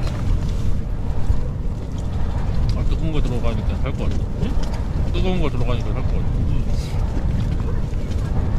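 Strong gusty wind buffeting the tent and microphone: a steady low rumble.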